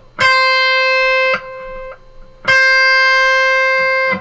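Electric guitar playing two long single notes of the same pitch on the high E string, about two seconds apart: the eighth-fret reference note and the seventh-fret note pre-bent a half step to match it. The pre-bent note lands pretty much spot on the reference pitch.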